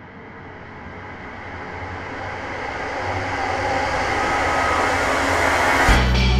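A rising noise sweep, a riser in the soundtrack, that swells steadily louder and brighter as it builds towards the start of the next song.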